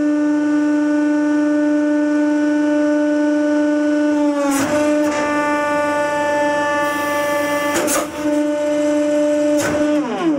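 Hydraulic press pump running with a steady, droning tone while the ram presses a round steel tube further. The pitch sags briefly about halfway through, and a few sharp clicks come in the second half.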